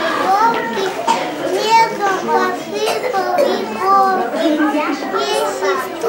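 Several young children chattering over one another, a constant mix of high-pitched little voices.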